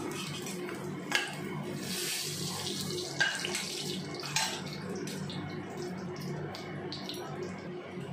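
Hot mustard oil sizzling steadily in a kadhai, with a few sharp clicks and scrapes of a metal spatula against the pan as the shallow-fried yam pieces are lifted out, about one, three and four and a half seconds in.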